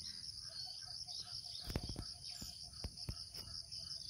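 Insects trilling steadily in a high, evenly pulsing chorus, with a few soft knocks from about halfway on.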